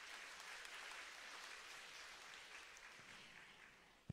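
Faint applause from a seated congregation, dying away near the end.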